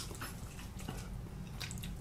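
Faint chewing and biting into sauced Buffalo chicken wings, a few soft clicks over a low steady hum.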